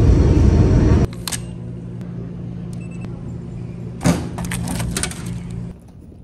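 Jet airliner heard from inside the cabin: a loud low engine rumble for about the first second, then a cut to a quieter steady drone with a few sharp clicks and knocks.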